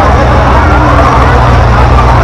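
Crowd chatter over a loud, steady low rumble.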